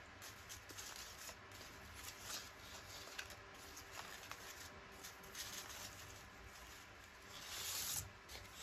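Faint rustling and light crinkling of paper scraps being sorted through by hand, with a louder rustle near the end as a strip is pulled from the pile.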